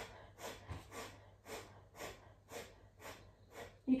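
Breath of fire: a woman's short, sharp breaths pumped from the stomach, sniffed through the nose in an even rhythm of about two a second.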